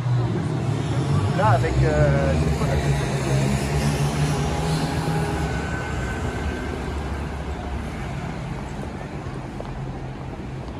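A motor vehicle's engine running close by in street traffic: it comes in suddenly and then fades slowly, with a steady low hum. A few words from passers-by can be heard.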